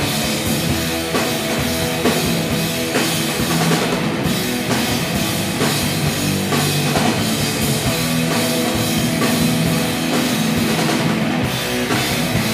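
Live rock band playing an instrumental passage: electric guitars, bass guitar and drum kit, amplified on stage.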